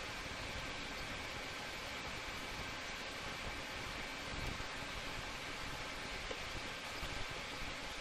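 Steady, even hiss of a TIG welding arc, its amperage controlled by a foot pedal.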